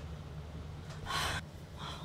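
A person's short, sharp breath, like a gasp, about a second in, followed by a fainter breath near the end.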